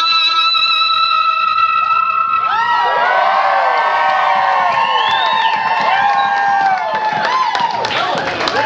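Electric guitar holding one long sustained note to close the national anthem. The crowd then breaks into cheers and whoops about two and a half seconds in, with clapping joining near the end.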